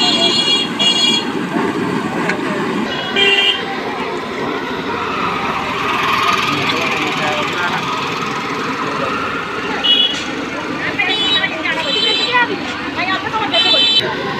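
Vehicle horns honking in street traffic: several short, high-pitched toots, a pair near the start, one about three seconds in, and a cluster in the last four seconds, over a steady din of traffic and voices.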